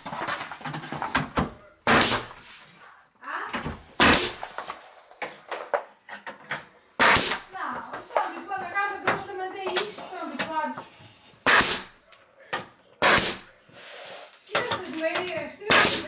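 Nail gun firing five times, single sharp cracks several seconds apart, as baseboard trim is nailed to the wall.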